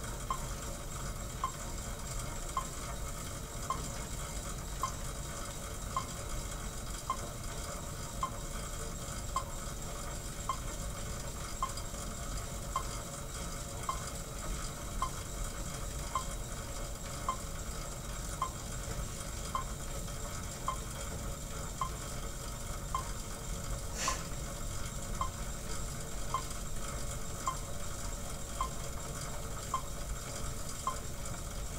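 Monark cycle ergometer being pedalled at zero resistance: a short, regular squeak about once a second, steady over background noise. One sharp click about 24 s in.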